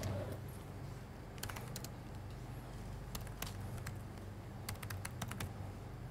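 Typing on a laptop keyboard: a few separate key clicks, then a quicker run of keystrokes near the end, as a terminal command is typed.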